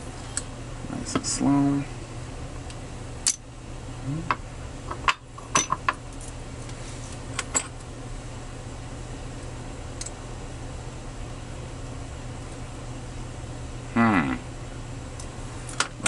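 Small metal padlock parts clinking and clicking as a steel-bodied padlock is taken apart by hand: the shackle and loose pins are handled and set down in a wooden parts tray. The sharp clicks are scattered through the first several seconds, then taper off over a steady low hum.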